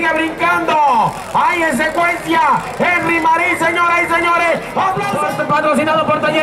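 Speech only: a man talking without a break, with no other sound standing out.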